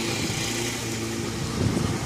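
The small engine of a grass-cutting machine running steadily at work.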